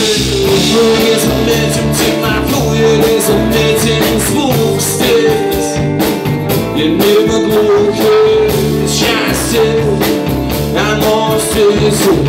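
Rock band playing live: electric guitars over bass and drums with a steady beat and a held melody line on top, heard from among the audience.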